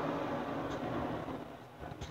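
Steady background hum and hiss that drops away slightly toward the end.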